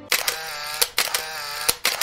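Channel logo sting: sharp clicks, mostly in quick pairs, over a sustained, wavering synth tone.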